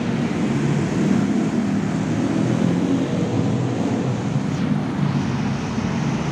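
Steady road traffic: cars and motorbikes passing on a busy road.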